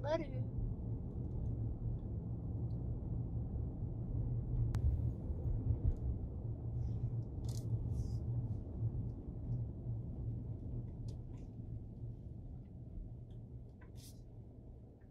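Low, steady rumble inside a car cabin, fading over the last few seconds, with a few faint clicks.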